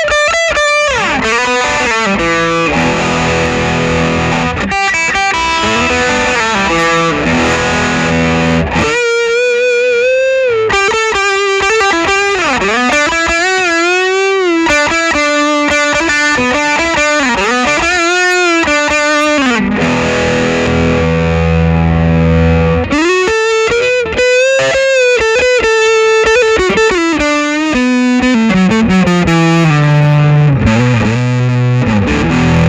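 Electric guitar, a gold-top Gibson Les Paul, played through a Fulltone PlimSoul overdrive pedal with its sustain at about three o'clock and the stage 2 hard-clipping still off, giving a soft-clipped, sustained overdrive. It plays bluesy lead lines with bent notes and vibrato, with held low notes later on.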